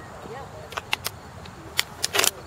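A few sharp clicks and crackles close to the microphone from a plastic water bottle being handled, over faint distant voices.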